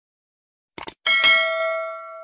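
Two quick clicks, then a bright bell ding that rings on and fades over about a second and a half: the sound effect of a cursor clicking the notification bell in a subscribe-button animation.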